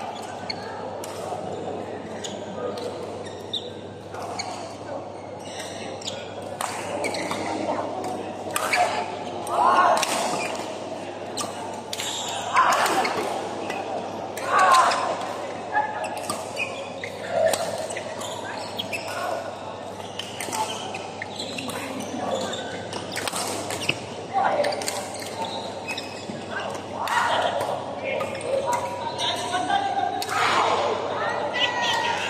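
Badminton rallies in a large indoor hall: repeated sharp racket strikes on the shuttlecock, mixed with players' voices and calls, all echoing off the hall.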